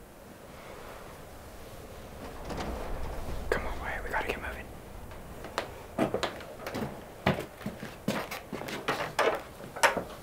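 Hushed whispering, breathy and without clear voiced tone, broken by short irregular rustles of bedding, most of them in the second half.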